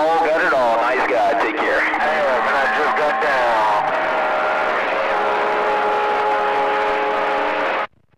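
A transmission received on a CB radio over steady hiss: wavering voice-like sounds at first, then several held steady tones, cutting off abruptly just before the end as the sending station unkeys and the receiver's squelch closes.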